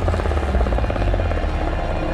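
Helicopter in flight, heard from inside the cabin: a deep steady rumble of turbine and rotor with a rapid, even beating of the blades.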